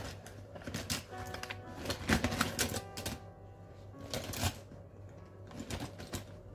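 Rummaging through a pencil case: pens and small tools clicking and clattering in irregular bursts, in a search for a missing slicing tool.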